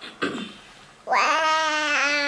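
A baby cooing: a short falling sound near the start, then about a second in one long, drawn-out vowel.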